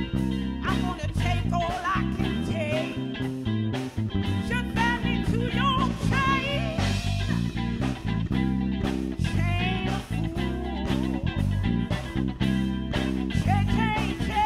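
Live band music in a soul-blues style: a woman singing over electric bass and guitar with a steady beat.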